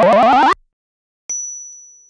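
Channel intro sound effects: a loud rising synth sweep that cuts off suddenly about half a second in, then after a short silence a single high-pitched ding that rings and fades away.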